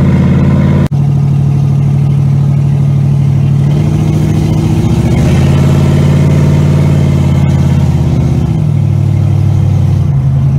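The super loud exhaust of a 1983 Chevrolet Camaro, heard from inside the cabin while it cruises at low revs. The engine note steps up about halfway through and drops back near the end, with a brief dropout in the sound about a second in.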